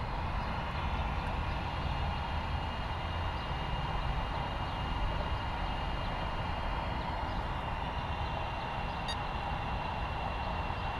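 Steady low background rumble with hiss, unchanging throughout, with a faint thin high tone over it.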